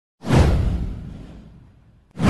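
A whoosh sound effect: a sudden swish about a quarter second in, sliding down in pitch over a deep low boom and fading away over about a second and a half.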